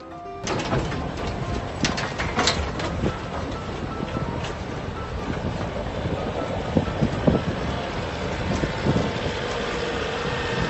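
Steady rush of wind and tyre-on-gravel road noise from vehicles moving fast on a dirt road, heard from close alongside, with a few sharp knocks about two seconds in.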